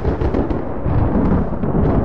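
A loud, deep rolling rumble that starts suddenly and carries no steady notes.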